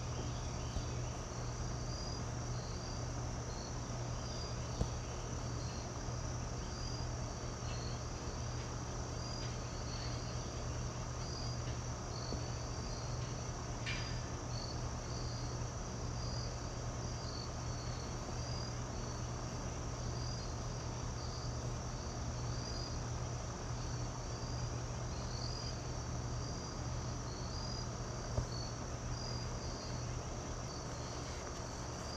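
Crickets chirping steadily in a continuous chorus, over a steady low hum, with a couple of faint knocks.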